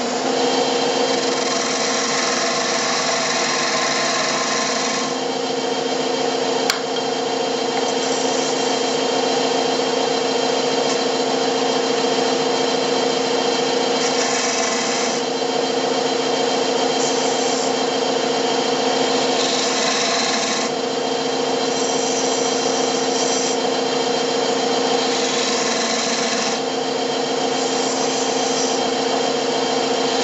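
Wood lathe running with a steady hum while a small hand-held tool scrapes into a spinning cherry workpiece, a hissing cut in repeated short passes, the longest in the first few seconds.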